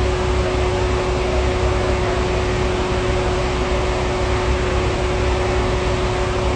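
Steady machine hum: a constant mid-pitched tone over a low rumble and hiss, unchanging throughout.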